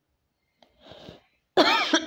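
A woman coughing: a short breathy cough about a second in, then a loud, harsh cough near the end.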